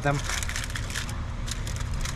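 Aluminum foil crinkling in irregular crackles as it is folded into a packet by hand.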